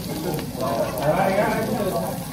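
Pork belly sizzling on a tabletop barbecue grill, with voices chattering in the background.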